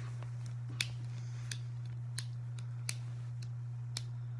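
A series of sharp, short clicks, about one every 0.7 seconds, over a steady low electrical hum.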